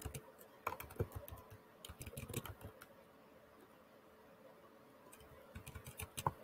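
Faint keystrokes on a computer keyboard as text is deleted: scattered taps through the first few seconds, a pause, then a few more near the end.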